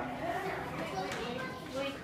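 Young children's voices chattering and playing.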